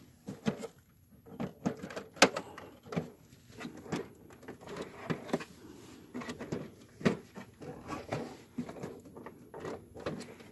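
Plastic clicks, knocks and rattles of a multifunction printer being handled: its case and cord moved and its scanner lid lifted, with sharp knocks about two seconds in and again about seven seconds in.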